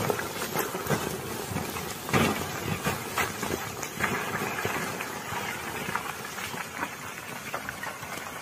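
A motorcycle and loose rocks tumbling down a steep rocky slope: a rumble of sliding debris broken by a series of knocks and thuds, the loudest about two seconds in, fading away toward the end.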